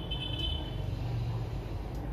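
Steady low background rumble with no distinct event, and a faint high thin tone during the first second.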